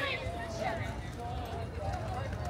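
Indistinct voices of people talking, not addressed to the camera, over a steady low background rumble.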